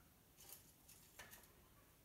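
Near silence, with two faint light clicks, about half a second and a second in, as a Christmas bauble is handled over the tray.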